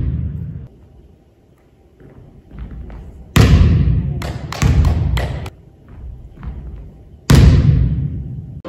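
A volleyball struck hard with an open hand and slammed onto a gym floor, ringing out in the hall's echo, twice: about three and a half seconds in and again near the end. After the first hit the ball bounces three more times, more softly.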